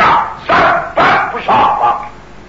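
A man's voice in four short, loud bursts.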